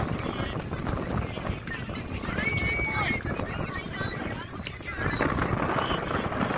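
Crowd and crew voices talking and calling outdoors, over a rough low rumble of wind buffeting the microphone, with one short, steady, high whistle-like tone about two and a half seconds in. The voices grow louder near the end.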